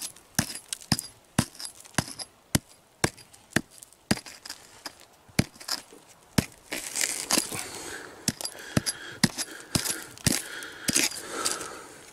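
A steel rock pick hammer striking and chipping at pegmatite rock and stony soil: sharp clicks and cracks about twice a second, unevenly spaced. Loosened rock fragments rattle and scrape between the blows, most around the middle and near the end.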